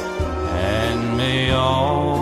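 Christmas music from a song medley, with held, chant-like notes over a steady bass line.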